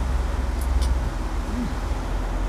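Steady low rumble and rushing noise of a sailing catamaran underway at sea, with two or three light clinks of cutlery on plates about half a second in.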